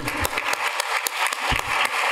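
Audience applauding: many hands clapping at once in a steady, dense patter.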